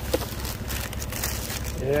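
A thin plastic bag crinkling as it is handled and held open, in quick irregular rustles, over a steady low rumble.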